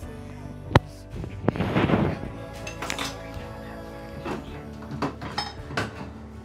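Dishes and cutlery clinking in a stainless steel sink as a child washes up with a sponge, with a sharp clink about a second in and a few lighter ones later, over background music.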